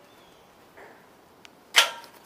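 A faint brief rustle about a second in and a small click, then a sharp, loud knock with a short metallic ring near the end.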